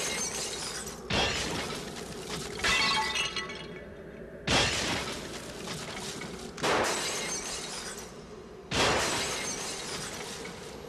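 Breaking glass: five sudden shattering crashes about two seconds apart, each trailing off in a ringing, rattling tail.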